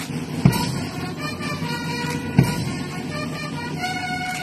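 Brass music of held, horn-like notes moving from one pitch to the next, with two loud thumps about two seconds apart, the first about half a second in.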